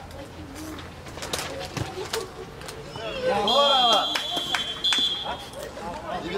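Referee's whistle blown in two shrill blasts about a second apart, with a man shouting loudly over the first blast.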